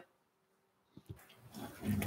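Near silence: quiet room tone, with a couple of faint clicks about a second in and a person's voice beginning faintly near the end.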